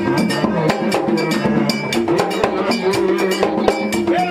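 Haitian Vodou ceremonial music: drums and a struck metal bell playing a fast, dense rhythm for the dance, over a held melodic line.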